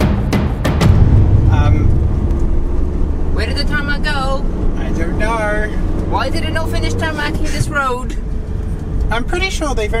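Campervan driving along an unpaved gravel road, heard from inside the cab: a steady low rumble of engine and tyres.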